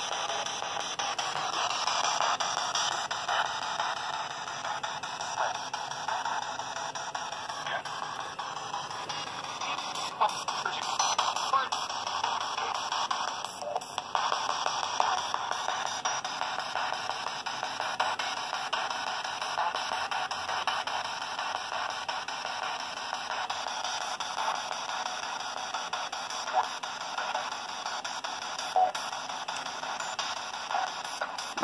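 P-SB7 Spirit Box radio sweeping the AM band: a steady, choppy stream of static broken by clipped fragments of broadcast voices and music. Some of the fragments are taken as spirit words (EVPs).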